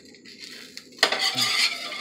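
A spatula scraping and pushing across a white coated frying pan as a pancake is shaped in it. A loud scrape starts suddenly about a second in and lasts about a second.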